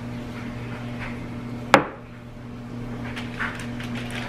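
Small metal spring-loaded ice cream scoop working thick brownie dough out of a mixing bowl. There is one sharp click or knock from the scoop a little before halfway, and faint scrapes later, over a steady low hum.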